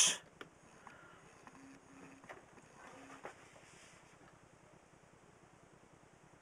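Near silence: room tone, with a few faint clicks and light knocks in the first three seconds.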